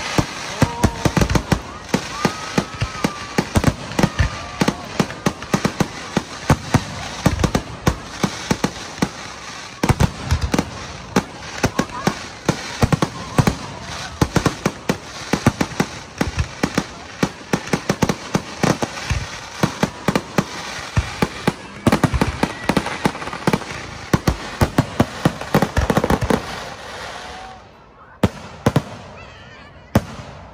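Aerial fireworks display: a rapid, dense barrage of shells bursting, bangs and crackles following one another almost without pause, easing into a brief lull near the end before more bursts.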